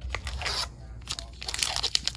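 Foil Pokémon booster pack crinkling and crackling as it is pulled from the display box and torn open at the top.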